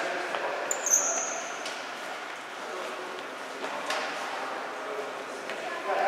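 Futsal play in a reverberant sports hall. About a second in, a sports shoe gives one brief high squeak on the wooden floor, and a couple of sharp ball kicks come near the middle, over faint voices.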